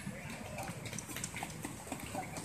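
Faint low rumble with scattered light clicks and taps, no music playing: the lull after the song has ended.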